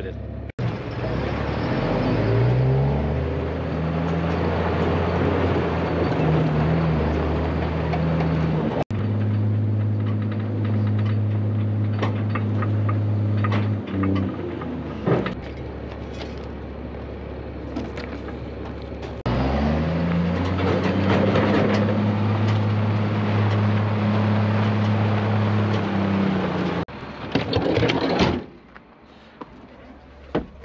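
An engine revving up and holding a steady higher pitch, twice: once about two seconds in and again about two-thirds of the way through. The sound breaks off abruptly several times between.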